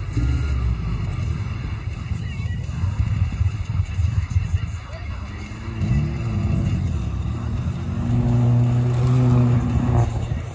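Rally car engines rumbling, with one car's engine coming close near the end and holding a steady note, the loudest part.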